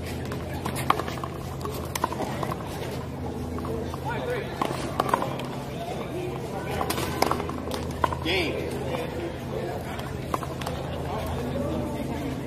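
One-wall handball rally: several sharp slaps, spread out, as a small rubber ball is struck by gloved hand and hits the concrete wall. Indistinct voices and a steady low hum run underneath.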